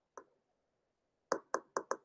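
Stylus tapping on a tablet screen while handwriting: a single tap, then a quick run of about five taps near the end.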